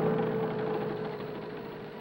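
A motor vehicle's engine running steadily with an even drone, loudest at the start and fading gradually.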